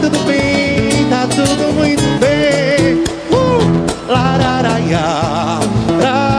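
Live acoustic band music: a male singer singing through a microphone over a strummed guitar and cajón beat, with the voice wavering in vibrato on held notes.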